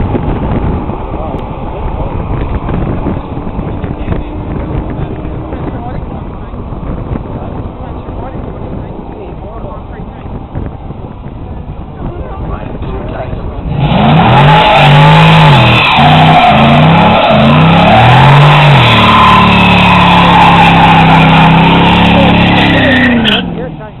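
A car doing a burnout. Its engine idles under background voices for the first half. Then it is revved up and down several times and held at high revs, very loud, with the hiss of spinning, squealing tyres. The sound cuts off abruptly just before the end.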